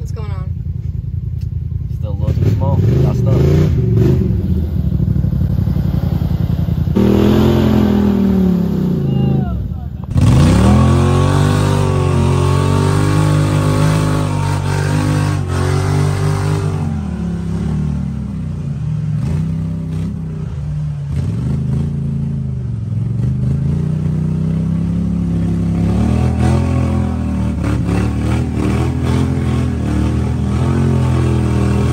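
Can-Am Maverick Sport side-by-side's engine revving up and down in repeated surges while driving through mud, with a sudden jump in loudness about ten seconds in.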